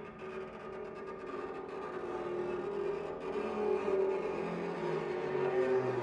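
Bass zither played with extended techniques, sounding sustained droning tones in the middle register that grow steadily louder.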